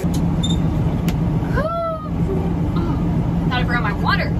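Semi truck's diesel engine idling, heard from inside the cab as a steady low drone.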